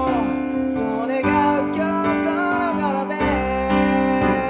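Kawai piano playing sustained chords that change roughly once a second, with a voice singing a gliding melody over them.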